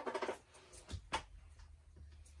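Handling noise of a plastic shower head and a roll of Teflon thread-seal tape being readied for wrapping: a short rasp at the start, then two sharp clicks about a second in.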